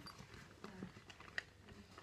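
Faint handling sounds of a clear plastic bag of small items being turned over in the hands: a few light clicks over soft rustling.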